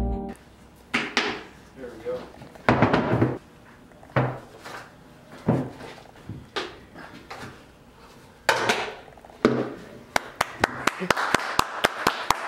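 Plastic five-gallon bucket lid being pried and pushed at: a string of separate knocks and pops about a second or so apart, then a quick run of sharp snaps near the end as the lid works loose.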